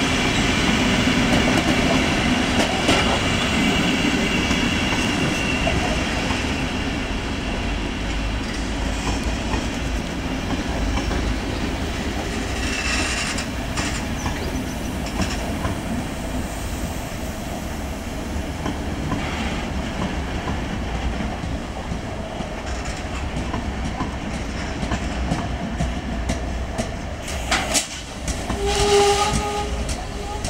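Railway wagons rolling past close by with a steady rumble and wheel noise, first passenger coaches and then loaded car-transporter freight wagons. Near the end, a train horn sounds.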